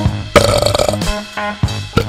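Short music jingle with a drum beat. About a third of a second in, a burp sound effect lasting about half a second plays over it and is the loudest sound.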